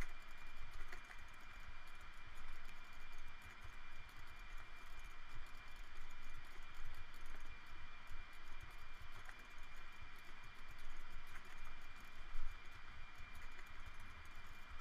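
Computer keyboard keystrokes and mouse clicks, scattered and light, over a steady hiss with a faint high whine, with one louder knock near the end.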